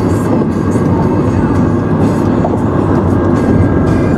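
Steady road and tyre noise inside a car cabin at highway speed, a continuous low rumble with no breaks.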